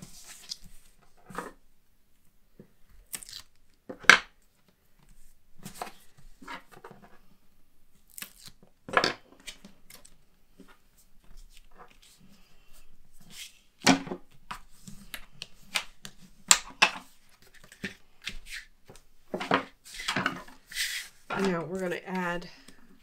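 Cardstock and double-sided tape being handled on a tabletop: the backing strips are peeled off the tape and the paper pocket is pressed down, giving a string of separate short rustles, peels and taps. A voice begins just at the end.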